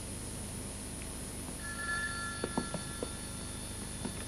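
Desk telephone ringing once, a single ring about two seconds long that starts a little past a second and a half in, with a few soft knocks during it.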